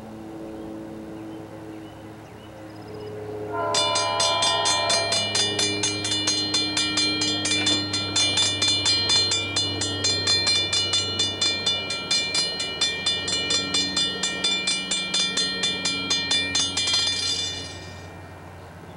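An approaching CSX diesel locomotive's engine runs steadily. About four seconds in, its bell starts ringing at an even rhythm of roughly two strikes a second, and it stops just before the end.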